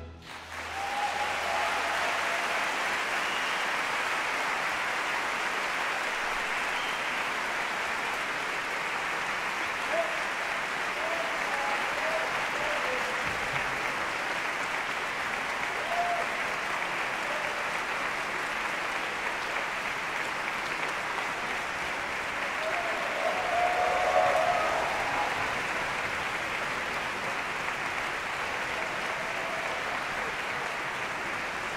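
Large concert-hall audience applauding steadily, the clapping swelling up within the first second as the orchestra's final chord ends and briefly growing louder about two-thirds of the way through.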